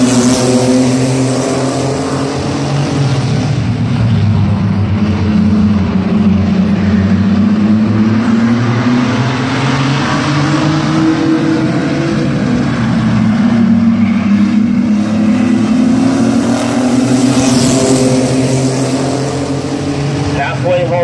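A pack of mini-truck race trucks racing on an oval, their engines revving and falling in pitch through the turns and down the straights. The engines are loudest as the pack passes close by at the start and again near the end.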